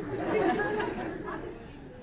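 Indistinct overlapping voices from the audience, off the microphone and echoing in the hall. They are loudest about half a second in and fade over the next second.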